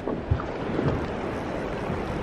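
Steady wind rumble on the microphone over the wash of river water around a drift boat.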